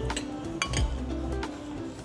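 Background music with held tones, over which a metal spoon or fork clinks lightly against a ceramic plate a few times in the first second.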